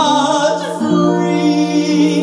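Music with held sung notes over instrumental accompaniment. The notes change to a new pitch about a second in.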